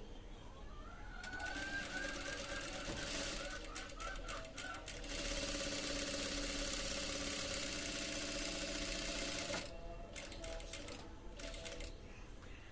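Industrial sewing machine stitching a fabric collar band. A short, stop-start run begins about a second in with a rising whine, then a steady run of about four and a half seconds stops sharply, and a few clicks follow.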